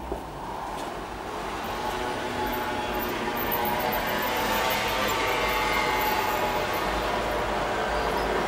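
City street ambience with road traffic noise, fading up over the first few seconds and then holding steady.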